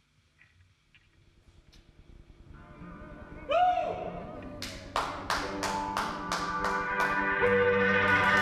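Electric guitar starting a blues number: a single note bent in pitch about three and a half seconds in, then chords struck in an even rhythm of about three a second, getting louder. It opens with a second or two of near silence.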